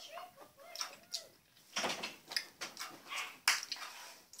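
A girl's wavering, whimpering "mm" sounds as she squeezes sour liquid candy into her mouth, followed by a run of wet lip smacks and mouth clicks as she tastes it.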